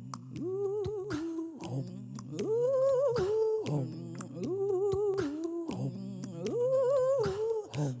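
A woman humming a wordless melody into a microphone, in repeated phrases of held notes that step up and fall back about every two seconds, over a low steady drone.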